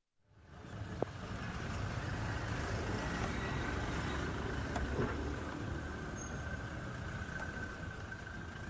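Faint car engine and road noise as an SUV moves slowly past, heard as a steady low rumble after a brief drop-out at the start. A faint click comes about a second in.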